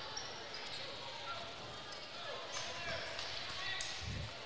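A basketball bouncing a few times on a wooden gym court as it is passed to the free-throw shooter and dribbled before the shot, over low crowd chatter in the gym.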